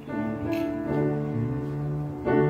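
Slow keyboard music in sustained chords: a new chord comes in right at the start, and the bass moves to a new note about halfway through.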